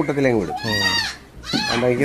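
Goats bleating: one wavering call about half a second in, and a shorter one near the end.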